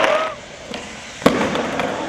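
Spectators clapping and cheering, cut off about a third of a second in. About a second later comes one sharp crack of a skateboard smacking the concrete flatground.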